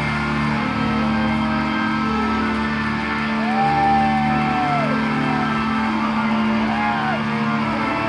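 Rock band playing live in a hall: a slow passage of long held notes. About halfway through, one lead note rises, is held for over a second, and falls away.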